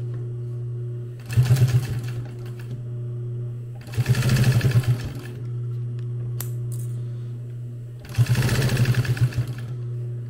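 Industrial sewing machine stitching nylon webbing onto a Cordura pouch in three short runs of rapid stitches, about a second each, the last one longer. A steady hum carries on between the runs.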